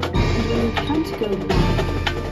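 Marching band playing a percussion-heavy passage: a quick series of sharp strikes over sustained low notes, with the texture changing suddenly at the start and again about one and a half seconds in.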